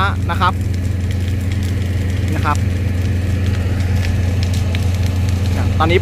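An engine running steadily, a low even drone that holds through the whole stretch.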